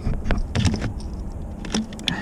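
A few light, irregular clicks and taps of a hand working among engine-bay parts, starting the thread of a new oil pressure sensor.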